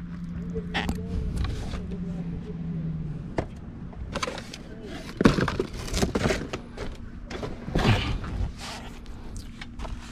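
Cardboard packaging, parts boxes and a plastic bag being handled and moved, giving a run of rustles, scrapes and dull thuds, the loudest about five and eight seconds in. A steady low hum fills the first few seconds.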